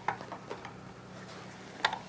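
A few light clicks and knocks of plastic parts being handled, the sharpest near the end as the plastic drill-bit chuck is set into the sharpening port of a Drill Doctor 500X bit sharpener. A faint steady hum lies underneath.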